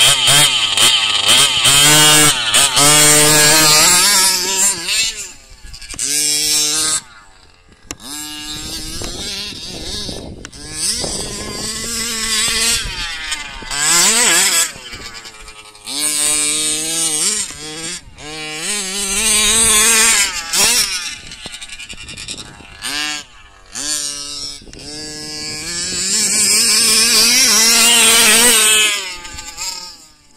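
HPI Baja 1/5-scale RC buggy's two-stroke petrol engine revving up and down in repeated loud bursts, dropping back to a lower, quieter running pitch between them.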